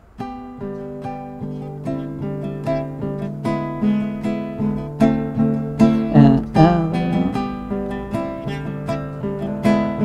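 Nylon-string classical guitar played fingerstyle: a steady run of single plucked notes, about two or three a second, with lower notes left ringing underneath, a simple beginner's exercise on one string.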